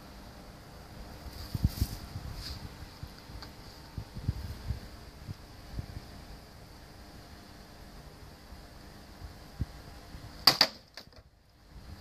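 Soft thuds of footsteps and movement, then about ten and a half seconds in a single sharp strike as a Böker Magnum Blind Samurai sword's blade hits a wooden cutting target. It is a poorly executed cut, a really bad cut, though the blade still goes in deep.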